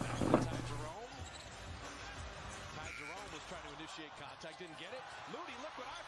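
NBA game broadcast sound: a basketball being dribbled on a hardwood court, with a commentator's voice faint behind it. A brief louder sound comes just after the start.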